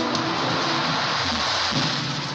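Intro-sequence sound effect: a loud, dense hiss like static or rain that takes over from the theme music's notes, with a few faint low notes still under it.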